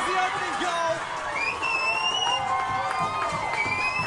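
Cheering and shouting voices celebrating a goal in a women's football match, with two long high whoops that rise in pitch, one about a second and a half in and one near the end.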